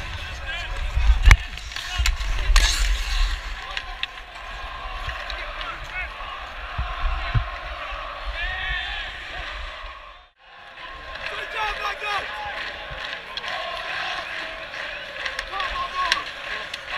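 Ice hockey play heard from on the ice: skates scraping, with sharp knocks of sticks and bodies against the boards in the first few seconds, over arena crowd noise and players' shouts. The sound drops out briefly about ten seconds in.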